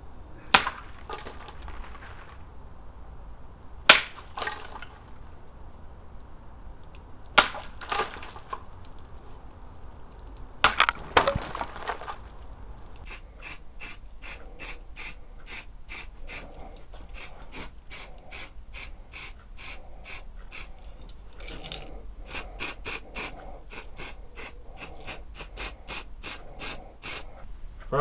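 A homemade short sword slashing through a plastic jug: four sharp cuts a few seconds apart, the last one doubled. Then short hisses from an aerosol can spraying lacquer onto the wooden handle, about two a second for around fifteen seconds.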